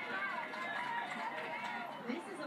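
Quiet speech in the background.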